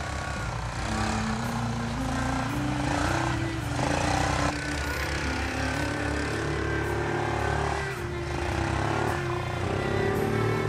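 Quad ATV engine running and revving while it is driven through snow, under background music with a stepped melody.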